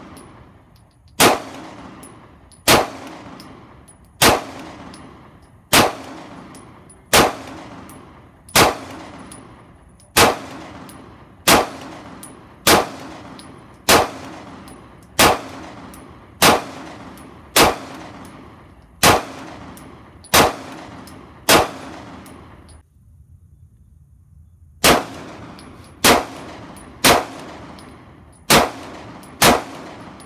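Beretta PX4 Storm 9mm pistol fired in slow, steady single shots about one and a half seconds apart, each crack followed by a ringing echo. There is a break of about two seconds about three-quarters of the way in, after which the shots come faster, about a second apart.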